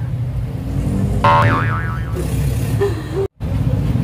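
A cartoon-style 'boing' sound effect about a second in: a springy tone that wobbles up and down for about a second, over a steady low background rumble. The sound cuts out briefly near the end.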